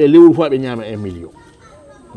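A man's voice speaking: one loud phrase that falls in pitch and trails off after about a second.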